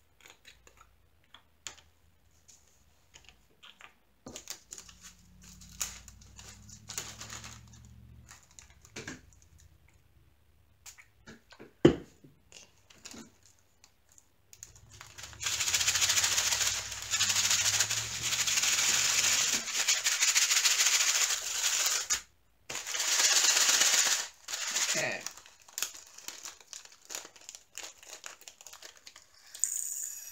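Small plastic diamond-painting drills poured from a zip bag into a plastic funnel tray: a loud, steady rush of tiny beads for about seven seconds from about halfway in, then a shorter second pour after a brief break. Before that come light clicks and rattles of small plastic drill containers being handled, with one sharp click.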